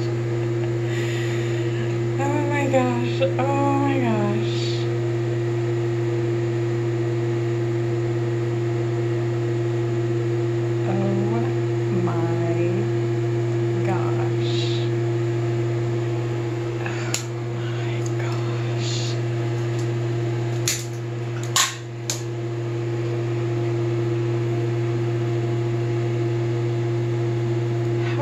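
A steady low mechanical hum throughout, with a few sharp clicks about 17 and 21 seconds in. Faint voices come through now and then.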